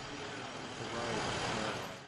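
Steady street background noise with a vehicle engine running, fading out at the end.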